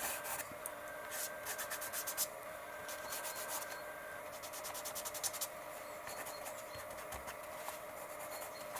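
Fine pen tip scratching across paper in short runs of strokes, with paper rubbing under the hand; fairly quiet.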